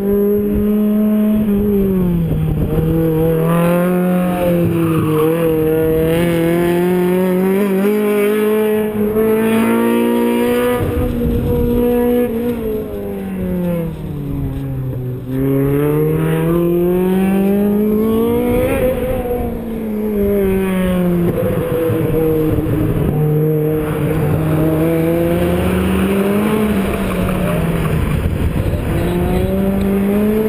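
An autocross car's engine running hard through a coned course, its pitch repeatedly climbing under acceleration and falling as it lifts and brakes for the turns, with one deep drop about halfway through.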